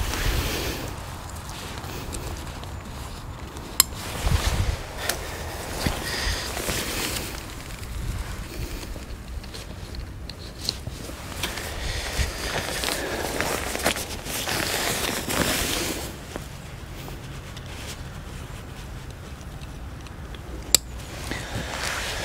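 Rustling of the hide's fabric roof canopy as it is handled and clipped down at the corners, with footsteps on grass and a couple of sharp clicks, one a few seconds in and one near the end.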